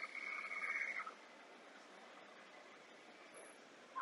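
A steady high-pitched tone that stops about a second in, followed by near silence with faint background hiss.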